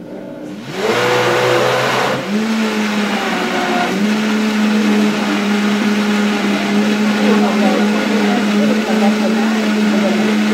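High-powered countertop blender running on a green smoothie: the motor spins up in the first second, steps up in speed about two seconds in, then runs steadily at high speed while a tamper pushes the thick mix down.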